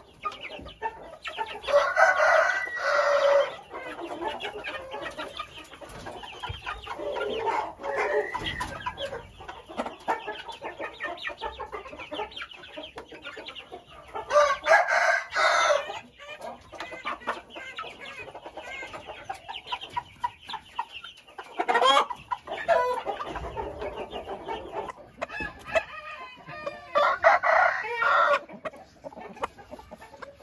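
Thai game chickens clucking and young birds peeping throughout, with a rooster crowing three times, about two seconds in, midway, and near the end.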